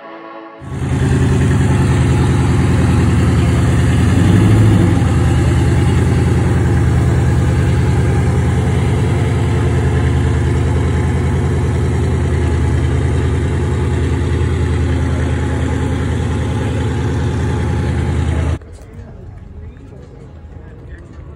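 A muscle-car engine, the green first-generation Chevrolet Camaro's, idling loudly and steadily with a deep rumble. The throttle is blipped once about four seconds in, and the sound cuts off suddenly near the end.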